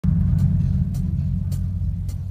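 A low, steady bass rumble from the stage sound system, with faint ticks about every half second.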